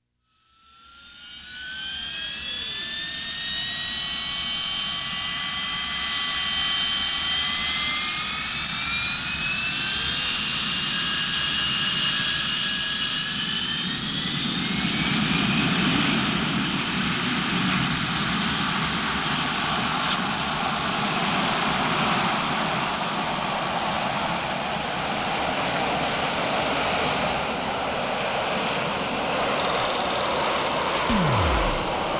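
Jet aircraft sound effect. It fades in from silence with several whining tones that climb in steps over about fifteen seconds, as a jet engine spooling up, then settles into a steady roar.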